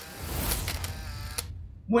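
A crackling electric zap sound effect: a dense rushing burst with a low rumble underneath, lasting about a second and a half and cutting off suddenly.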